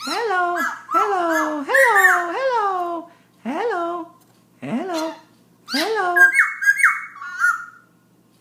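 Black-throated laughingthrush singing at night: a quick string of short, rich notes, each sliding up and then down in pitch, followed about six seconds in by a higher, wavering whistled phrase.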